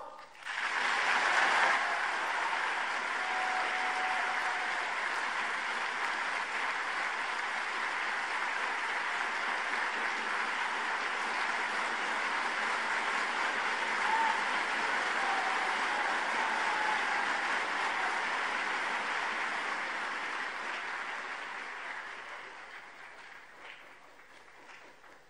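A large audience in a big hall applauding steadily for about twenty seconds, then dying away near the end.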